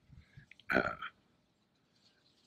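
A man's short, throaty hesitation sound "uh" about a second in, after a few faint mouth clicks, in a pause in his speech.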